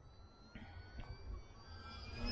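Faint high whine of an RC plane's Sunny Sky A2216 1250 kV brushless motor and 10x7 propeller in flight, rising slowly in pitch and growing louder near the end as the plane comes closer.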